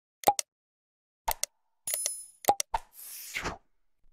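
Edited outro sound effects: short, sharp pops in pairs, a bell-like ding about two seconds in, and a brief whoosh near the end, each set against dead silence.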